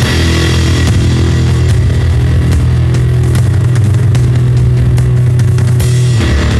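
Lo-fi garage rock: a distorted chord held as a steady low drone for several seconds, with no drum beat under it.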